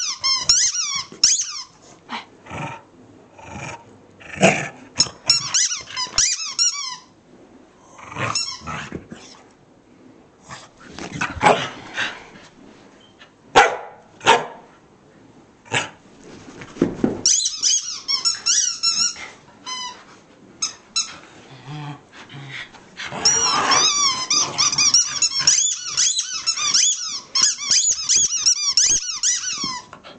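Corgi chewing a carrot-shaped squeaky toy, squeaking it in quick runs of high squeaks, the longest near the end. A few short sharp sounds fall in the gaps between the runs.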